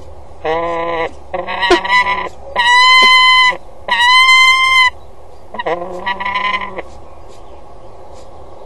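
Peregrine falcons calling at a nest box: five drawn-out, harsh calls about a second each, the middle two higher-pitched than the rest.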